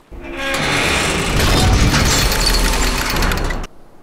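Loud cartoon crash sound effect of a ship striking an iceberg: crashing and breaking noise over a deep rumble that builds for about three seconds and then cuts off suddenly.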